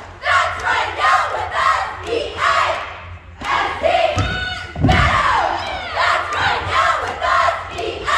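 Cheerleading squad shouting a cheer in unison: short, rhythmic shouted phrases with brief breaks between them, echoing in a gym. A low thud comes about four and a half seconds in.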